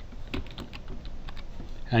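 Computer keyboard keys clicking in a string of separate keystrokes as a short word is typed.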